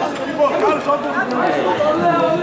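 Several voices talking over one another: a steady babble of chatter with no single voice standing out.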